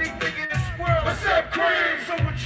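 Hip hop beat played loud over a concert PA, with a heavy bass, and voices shouting into microphones over it amid crowd noise.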